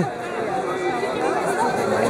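Speech: a man talking over a stage microphone, with chatter behind him and no music.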